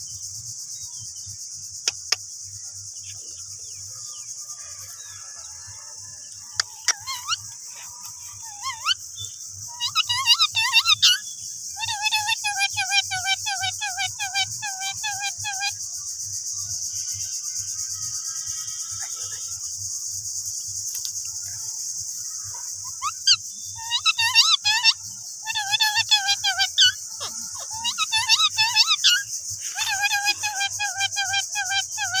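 Indian ringneck parakeets chattering in several bursts of rapid, repeated pitched notes. A steady high insect buzz runs underneath.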